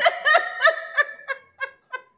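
A woman laughing hard in a run of short bursts, about three a second, fading toward the end.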